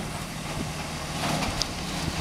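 Garbage truck engine idling, a steady low hum.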